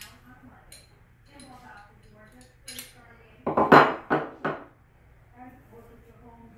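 Metal clinks and clatter of pistol parts on a wooden desk, a quick cluster of sharp strikes about three and a half seconds in, as the stainless steel slide of a SCCY CPX-1 9mm is set down.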